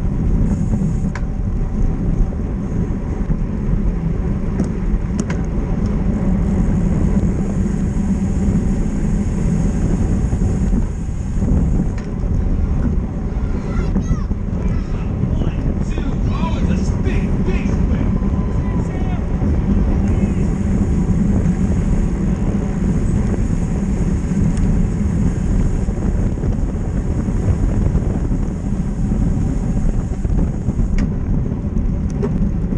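Steady wind rush and road rumble on a bicycle-mounted action camera's microphone while racing at speed in a criterium pack. Brief voices come through about halfway through.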